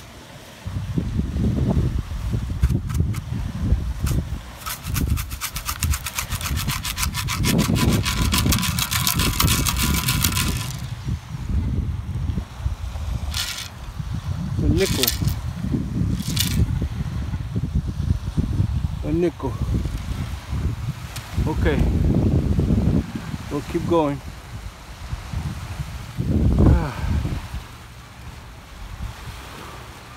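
Metal beach sand scoop digging into sand, then sand being shaken out through its wire-mesh basket as a rapid rattle lasting several seconds, over a steady low rumble.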